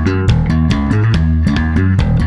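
Electric bass played with the double-thumb slap technique: a fast, driving classic-metal riff of rapidly repeated slapped notes, a riff originally played with a pick.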